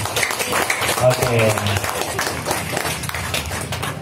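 People applauding, many quick irregular hand claps, with voices talking over them.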